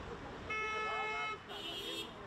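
Vehicle horns honking twice. The first is a held toot of nearly a second, starting about half a second in. The second is a shorter toot at a different pitch near the end.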